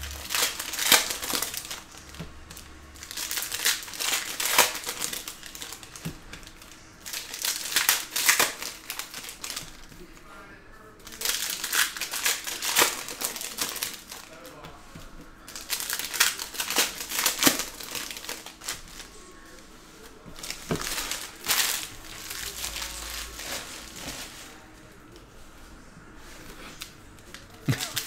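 Foil wrappers of trading-card packs crinkling as they are torn open and handled, in bursts of crackling a few seconds apart, with the cards rustling between them.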